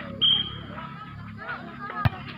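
Referee's whistle: one short steady blast about a quarter of a second in, signalling the server to serve, over chatter from spectators.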